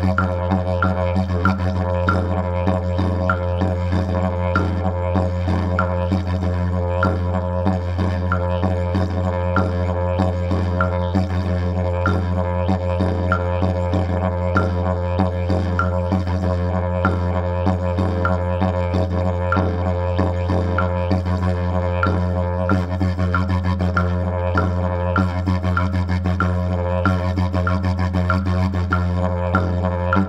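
Didgeridoo (yidaki) playing a composed rhythm: an unbroken low drone with a repeating pattern of sharp accents, about one and a half a second, riding over it.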